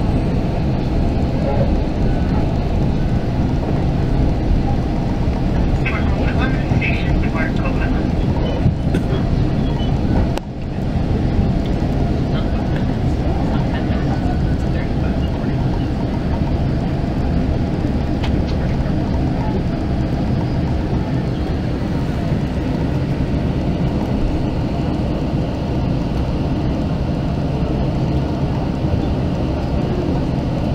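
Steady low rumble inside a West Coast Express commuter train coach as it rolls into a station and slows to a stop, with voices heard at times over it.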